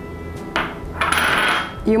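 A small glass dish knocks and scrapes on a stainless steel mixing bowl as baking powder is tipped in. There is a short knock about half a second in, then a scraping rattle lasting under a second with a faint high ring.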